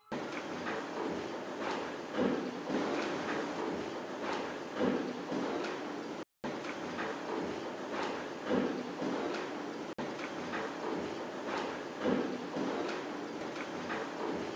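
A series of dull thuds or knocks, roughly every second and a half, over a steady hiss, with a brief dropout about six seconds in.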